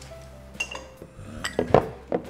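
Plates and cutlery clinking as dishes are set down on a table: a few light clinks about halfway in, then a louder cluster of sharp clinks near the end.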